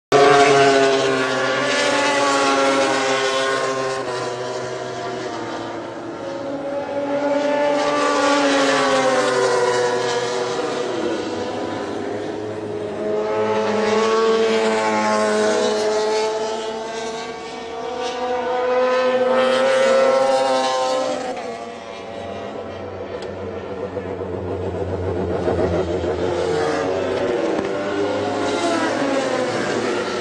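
800cc four-stroke MotoGP racing motorcycle engines at high revs, the pitch climbing and dropping with gear changes. The sound swells and fades several times as bikes pass.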